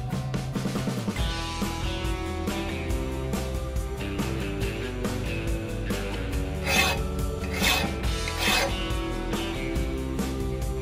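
Background guitar music, with three rasping strokes of a hand file on a steel brush hog blade in the second half, about a second apart.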